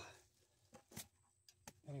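Mostly quiet, with a few short, sharp clicks and knocks of stones and gravel as the rocks caught in a classifier screen are tossed aside, the loudest about a second in.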